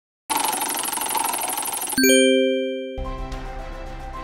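Intro sound effects for an animated title: a dense, steady shimmering sound, then a single bell-like chime struck about two seconds in that rings and fades. Background music with a beat starts about a second after the chime.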